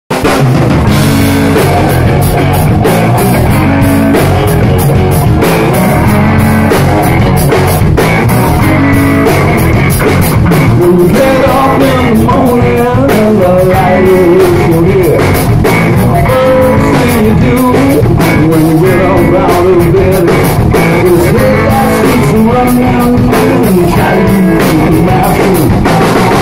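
Live rock band playing loud: electric guitars, bass guitar and drum kit, with drum hits keeping a steady beat.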